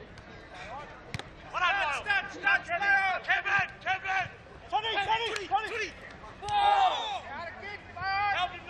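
Football players shouting and calling to one another on the field during open play, several loud calls in a row. A single sharp knock sounds about a second in.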